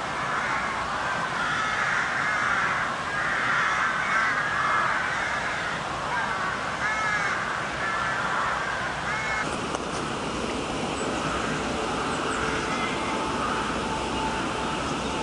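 Several crows cawing over and over, the calls overlapping in the first part and thinning out after about nine seconds.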